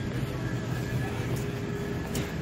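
Supermarket background noise: a steady low hum of store ventilation and refrigerated cases with faint steady tones, with a brief click about a second and a half in.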